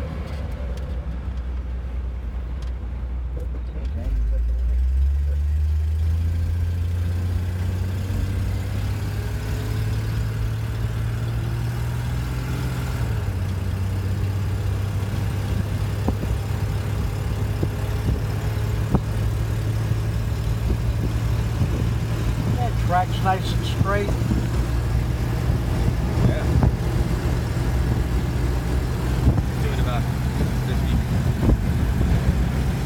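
1963 Ford Falcon Futura's 144 cubic-inch straight-six heard from the driver's seat, first at a low steady idle, then pulling away about four seconds in, its note rising under acceleration. The note steps once as the automatic transmission shifts up, then settles into a steady cruise over road noise.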